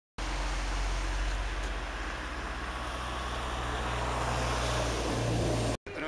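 Steady outdoor background noise with a low rumble, cutting off suddenly near the end.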